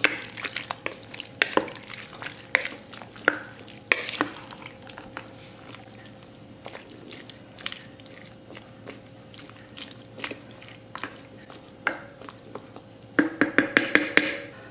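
Wooden spoon stirring chunky soup in a crock pot: wet sloshing with scattered taps and scrapes of the spoon against the pot, busiest in the first few seconds and sparser after.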